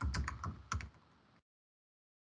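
Typing on a computer keyboard: a handful of quick, uneven keystrokes over the first second or so, then the sound cuts off abruptly to dead silence.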